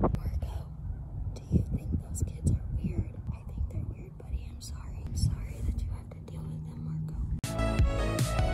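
A woman speaking softly, close to the microphone, almost in a whisper; background music comes in near the end.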